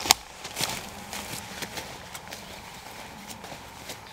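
Quiet outdoor background with one sharp click at the very start, then scattered light clicks and ticks at irregular intervals.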